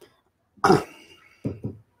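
A man coughs once, sharply, a little over half a second in, then makes two short voiced sounds in his throat.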